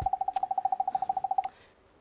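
A single electronic tone pulsing rapidly, about twenty pulses a second, lasting about a second and a half before it stops: a cartoon-style sound effect added in editing. A low thump comes right at its start.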